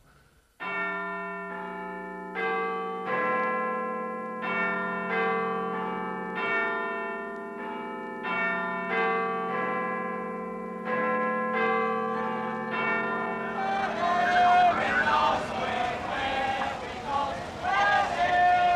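Church bells ringing, one struck note after another at a steady pace. About fourteen seconds in, the bells give way to a hubbub of voices.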